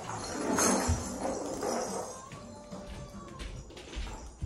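A mobile phone's musical ringtone playing faintly, with rustling and a soft thump about a second in as things are handled.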